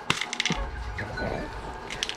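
Coins (quarters) clinking and rattling inside a small plastic container as it is handled, the clinks bunched in the first half-second.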